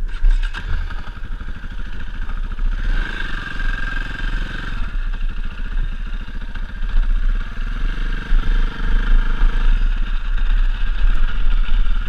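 Dirt bike engine accelerating and revving through the gears in loose sand, its pitch climbing about three seconds in and again near the end, over a steady low rumble.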